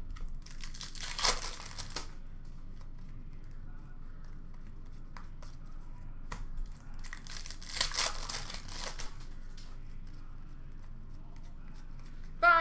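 Trading-card pack wrappers being torn open and crinkled. The two loudest bursts come about a second in and again about eight seconds in, with quieter card handling between.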